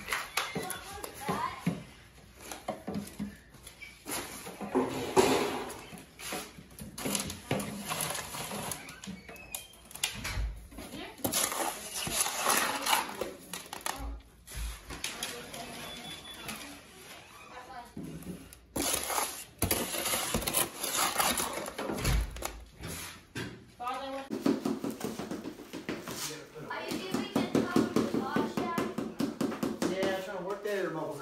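Wet fiber-reinforced concrete mix being scooped, packed and scraped into plastic beehive molds: scattered knocks and scrapes, with indistinct voices. From about 24 seconds in, a fast, steady rattling.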